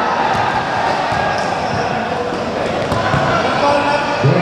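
Basketballs bouncing now and then on hard court flooring in a large hall, over a steady babble of crowd chatter.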